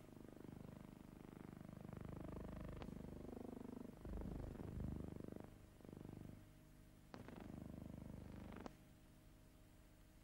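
Faint low rumble and hum with a few sharp clicks, the surface noise of an old optical film soundtrack.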